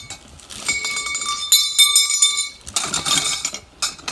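A pile of plastic clothes hangers clattering and clinking together as gloved hands rummage through them, with a run of bright ringing clinks in the middle and a sharp click near the end.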